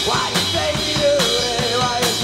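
Rock band playing live: drum kit, electric bass and electric guitar, with a lead melody that slides and wavers in pitch over a steady drum beat.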